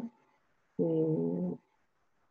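A person's drawn-out hesitation sound, a held 'eeh' at one steady pitch lasting under a second.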